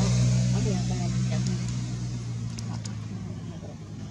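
A motor vehicle engine's steady low hum, fading gradually as the vehicle moves away. Faint wavering squeaky calls come over it in the first second or two.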